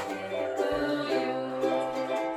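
Ukulele music, a run of plucked and strummed notes that change about every half second.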